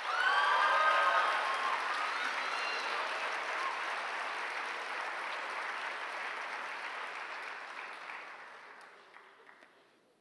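Audience applauding, with a few shouts near the start; the clapping dies away steadily over about nine seconds.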